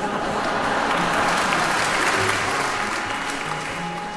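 Audience applause that swells and then fades out near the end, over the orchestra's baroque accompaniment, its bass line still heard underneath.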